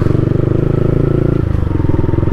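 Yamaha MT-15's single-cylinder engine running steadily at low road speed, heard from the rider's seat, easing off about one and a half seconds in.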